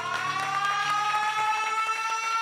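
Siren sound effect winding up: two tones glide slowly upward together over a low hum. It works as the sting that opens a programme segment.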